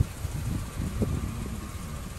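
Low, steady rumble of a car driving slowly, with a couple of light knocks about a second apart.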